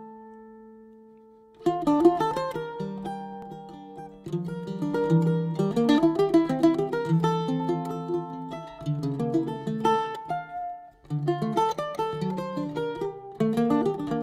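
Ten-string bandolim (Brazilian mandolin) playing: a chord rings and fades away, then quick plucked melodic runs and chords resume, with a brief pause about 11 seconds in.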